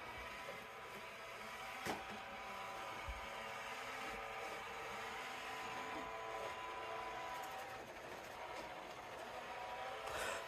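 iRobot Roomba j7+ robot vacuum running, a steady whir with a faint whine, with one short knock about two seconds in.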